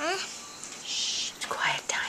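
A child whispering close to the microphone: a short rising voice at the start, then breathy whispered sounds about a second in and again near the end.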